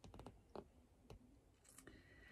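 Near silence with a few faint clicks from a hardcover picture book being handled and moved.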